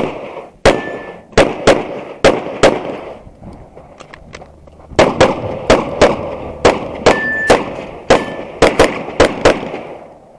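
Handgun fired in rapid strings from the shooter's own position: about seven quick shots, a lull of about two seconds, then about fourteen more. A few shots are followed by a short metallic ring from a hit steel target.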